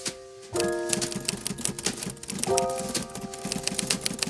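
Typewriter sound effect: a rapid run of keystroke clicks, about ten a second, starting about half a second in, over sustained keyboard chords struck at the same moment and again about halfway through.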